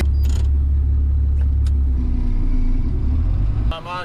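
John Deere 7700 tractor's diesel engine running steadily under load, heard from inside the cab as a loud, deep drone. It stops abruptly near the end, where a man's voice begins.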